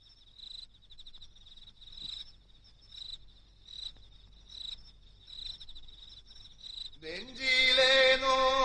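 Crickets chirping: a steady high trill that swells roughly once a second. Music comes in near the end.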